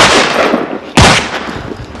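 Two loud rifle shots about a second apart, each trailing off in a long echo.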